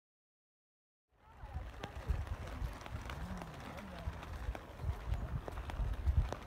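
Wind rumbling on a phone microphone, with knocks and rubbing from the phone being handled and carried on foot. It cuts in suddenly about a second in, after dead silence.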